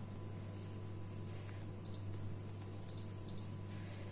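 Induction hob running under a pan of soap mixture on the boil: a quiet, steady low hum, with a few faint, very short high beeps in the second half.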